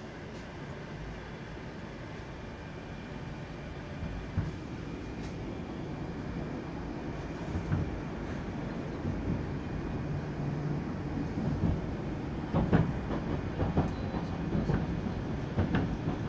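Moscow metro train heard from inside the car, its running rumble growing steadily louder as it picks up speed after leaving the station. Sharp knocks and rhythmic clacks of the wheels over rail joints become frequent in the last few seconds.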